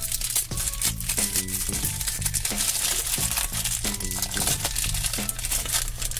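Thin clear plastic bag crinkling and rustling as fingers pull it open, with background music playing under it.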